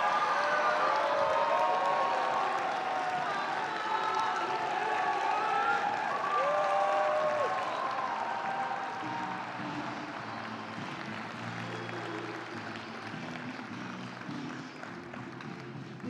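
Crowd applauding with cheers over it, loudest at first and dying away slowly.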